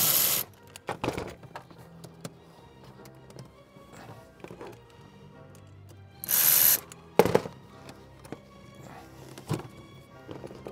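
Cordless electric ratchet running in two short bursts, one at the start and one about six seconds later, loosening bolts on the engine's air intake. A sharp knock follows just after the second burst, with background music underneath.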